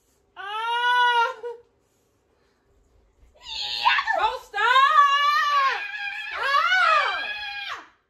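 A woman's high-pitched screams: one cry of about a second, then after a short pause a longer run of several drawn-out cries that stops just before the end.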